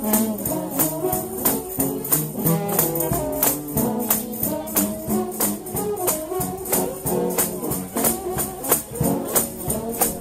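Recorded gospel shout-band music: a brass band playing dense, overlapping lines over a steady, evenly repeating tambourine beat.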